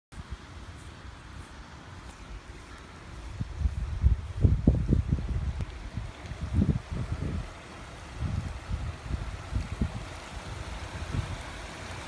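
Floodwater running across a street and along the curb, a steady rushing hiss, with gusts of low rumbling wind buffeting on the microphone, heaviest from about three to eight seconds in.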